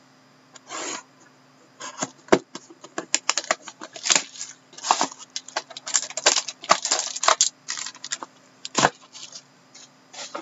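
Clear plastic shrink wrap being torn and crinkled off a small trading-card box, a busy run of crackles, sharp clicks and rustles as the wrap and the box are handled.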